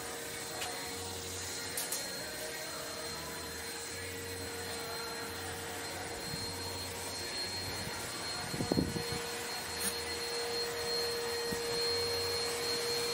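A steady hum with a constant mid-pitched tone, growing a little stronger in the second half, with a brief louder scuffle about two-thirds of the way through.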